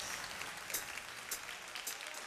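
Light, scattered clapping from a few people in a studio.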